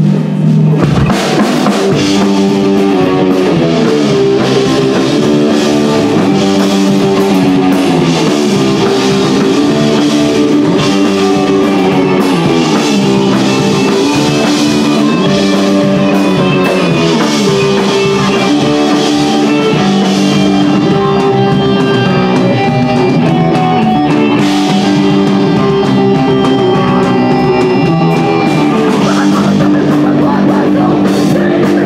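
A hardcore punk band playing a song live and loud: guitar and bass riffing over a drum kit, the chords changing every second or so.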